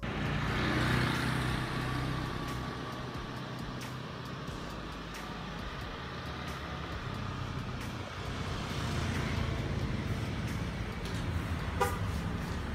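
Street traffic: vehicles passing with engine rumble and tyre noise, swelling about a second in and again near the end.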